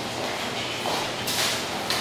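Shoes sliding and scuffing on a wooden dance floor during waltz turns, heard as a couple of brief swishes over a steady low room hum, the longest a little past the middle.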